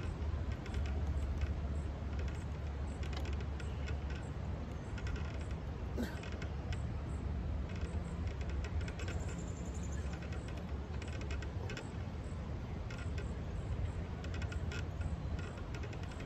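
A man doing pull-ups on an outdoor metal bar: faint short creaks and effort sounds every second or two, over a steady low rumble.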